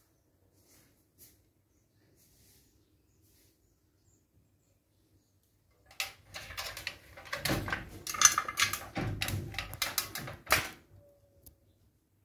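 Close handling noise: near silence for the first half, then about five seconds of dense scraping, rustling and knocking against wooden boards close to the microphone.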